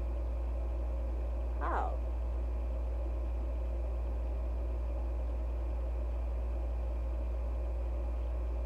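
A steady low hum throughout, with one brief, pitched voice-like sound a little under two seconds in.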